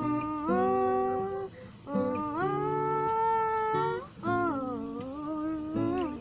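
A woman singing wordless held notes over a strummed acoustic guitar: three long phrases, each sliding up into its note, with short breaks between them.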